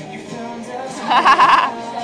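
Music playing in a large hall, with a loud, high, wavering vocal cry from someone close by for about half a second, a second in.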